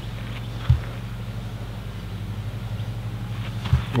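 Steady low motor hum, with two soft low thumps, one just under a second in and one near the end.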